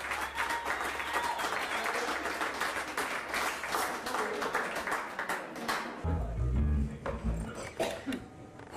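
Small bar audience clapping and talking as a live band's song ends, over a steady amplifier hum; about six seconds in, a few loud low bass notes sound.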